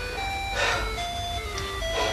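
A short electronic melody of single held notes, stepping up and down in pitch, in a simple chime-like jingle.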